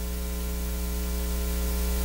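Steady electrical mains hum with a faint hiss, from the church's sound and recording system, heard in a pause between words.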